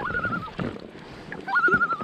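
Common loon giving its tremolo call twice: each call rises and then holds a fast, quavering, laugh-like tone for about half a second. The second call comes about one and a half seconds in. This is the loon's alarm call, given when it is disturbed and agitated.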